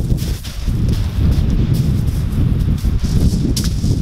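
Wind buffeting the microphone in a loud, churning low rumble, with footsteps crunching across shingle pebbles close by.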